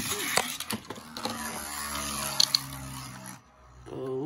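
A Beyblade spinning top whirring on the plastic floor of a Beyblade stadium right after launch, a steady rattling whir with one sharp click partway through. The whir fades out about three and a half seconds in.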